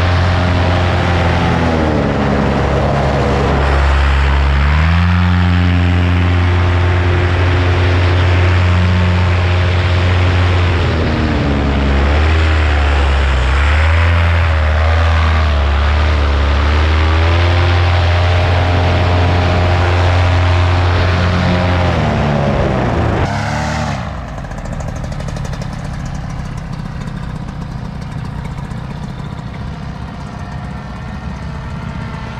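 Paramotor engine and propeller running in flight, its pitch rising and falling again and again with the throttle. About 23 seconds in it drops away suddenly to a much quieter hiss with faint engine tone.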